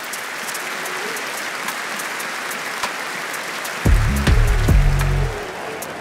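Intro music: a steady wash of noise, with deep bass notes coming in about four seconds in and stopping about a second later.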